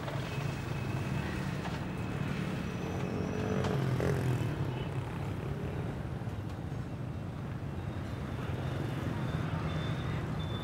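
Steady hum of street traffic, a low rumble of passing vehicles, with one vehicle passing a little louder about three to four seconds in.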